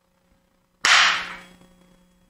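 A single sharp, loud crack a little under a second in, fading away over about half a second.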